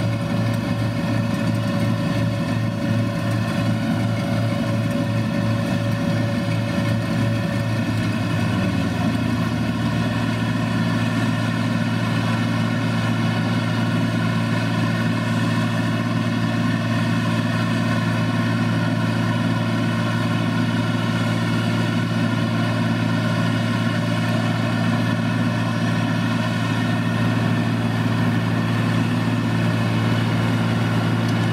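Claas Dominator combine harvester, rebuilt for pumpkin threshing, running steadily while its auger unloads pumpkin seeds into a trailer, with the tractor's engine running alongside. A fast pulsing beat and a steady high tone stop about eight seconds in, leaving an even engine drone.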